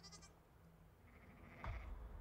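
Faint sheep bleating on a film soundtrack, with a low rumble coming in near the end.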